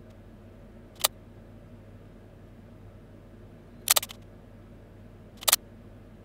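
Camera shutter sound effect playing back: a sharp click about a second in, then shutter clicks near the fourth second and again about a second and a half later, over a faint steady hum.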